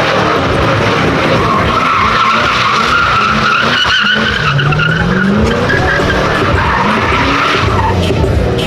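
Fox-body Ford Mustang drifting: the engine is held at high revs while the spinning rear tires give a long, steady squeal. About halfway through, the engine note dips and then climbs again.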